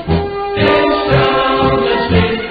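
A choir singing a German soldiers' march song in German, with a steady, rhythmic instrumental bass line beneath the voices.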